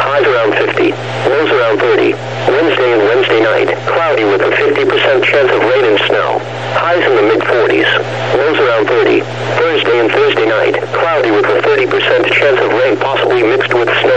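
Computer-synthesized NOAA Weather Radio voice reading the extended weather forecast without pause, heard through a radio receiver, with a steady low hum underneath.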